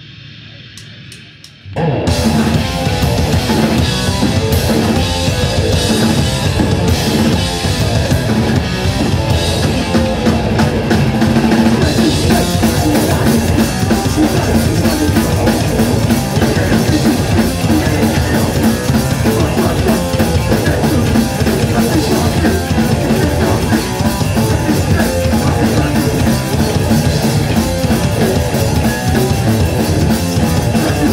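A hardcore punk band starts a fast song live at full volume about two seconds in: electric guitar and drum kit together, after a few sharp clicks.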